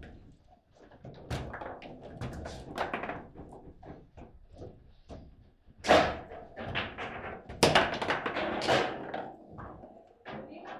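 Foosball table in play: an irregular run of sharp knocks and thuds from the ball being struck by the figures and the rods being worked, with the loudest hits a little past the middle.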